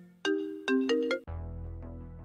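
Mobile phone ringtone: a short electronic melody of about four distinct notes, followed about a second in by a held chord with a deep bass.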